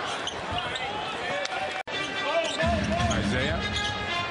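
Basketball game sound in an arena: a ball bouncing and court noise over a busy crowd. The sound drops out for an instant just before halfway, then comes back fuller in the low range.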